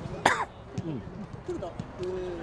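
A person coughing once, loudly and briefly, close to the microphone, over the low chatter of nearby voices.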